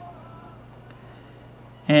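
Quiet room tone with a steady low hum in a pause between spoken phrases; a man's voice starts again near the end.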